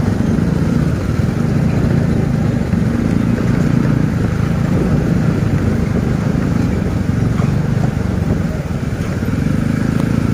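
Motorcycle engine running steadily at low speed with road rumble from the rough surface, as heard from a camera mounted on the bike.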